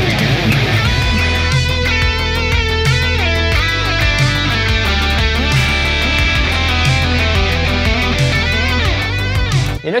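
High-gain electric guitar lead solo through the PolyChrome DSP McRocklin Suite amp sim's Gain amp, quick runs with bends and vibrato, smeared by heavy delay repeats: too much delay for a solo. It cuts off just before the end.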